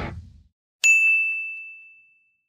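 A single bright ding, like a struck bell or chime sound effect, that rings out and fades over about a second and a half. Just before it, the tail of rock backing music fades away.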